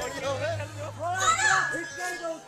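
Many overlapping voices, high children's voices among them, calling and shouting, over a steady low held note of music that steps up in pitch near the end.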